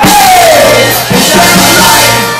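Loud live band music from a rock-Latin band: drum kit, electric guitar and trumpet, with a voice. A strong note slides down in pitch at the start.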